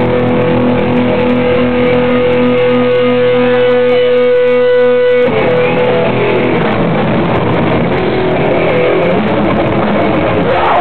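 Loud live hardcore punk band. An electric guitar holds one long ringing note over an evenly pulsing low note, then about five seconds in the full band comes in with dense, distorted playing.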